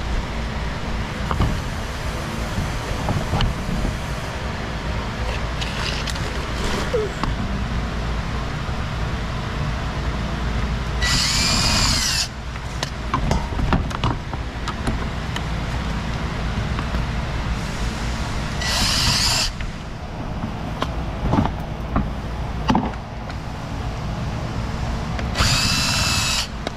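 Pneumatic air tool, such as an air ratchet, running in three short bursts of about a second each as it backs out bumper fasteners. Between the bursts there are scattered light clicks and knocks over a steady low rumble.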